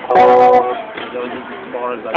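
Electric guitar being finger-picked: a chord of several notes plucked just after the start, ringing and fading, followed by a few quieter single notes.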